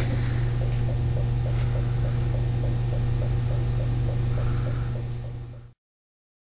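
Steady low electrical hum from the supply powering a homemade hydrogen electrolysis cell that has just been plugged back in, with faint ticks about four times a second. The sound fades out about five seconds in.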